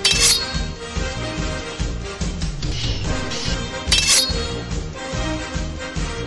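Background music with two sharp metallic sword-clash sound effects, one right at the start and another about four seconds in.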